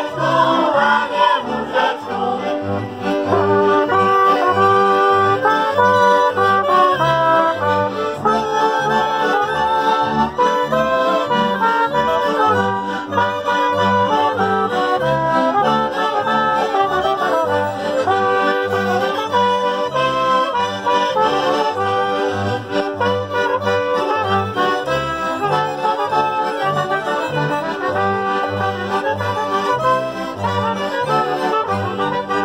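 A folk band playing a lively instrumental tune, the accordion leading the melody with fiddle, and a bowed bass keeping a steady pulsing bass line.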